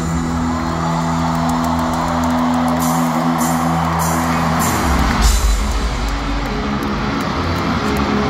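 Live band music through a stadium sound system, heard from the stands: low chords held steadily over a dense wash of crowd noise, with the held notes changing about five seconds in.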